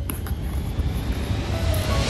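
Whoosh sound effect: a rushing noise that swells and rises in pitch toward the end, bridging a break in the background music.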